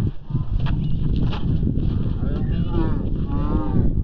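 Heavy wind rumble on the microphone with a couple of sharp knocks in the first second and a half, then a drawn-out, wavering shout from a person's voice in the second half.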